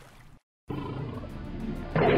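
A tiger growl sound effect: a low, steady growl that comes in abruptly after a brief moment of dead silence, under background music.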